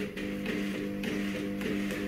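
Stepper motors of a DIY motion-control camera robot humming a steady pitched tone as the carriage is driven quickly back and forth by joystick, the tone cut by short gaps as it starts and stops. The stepper drivers have no silent stepping and the rig carries no weight, so it vibrates and is a little noisy.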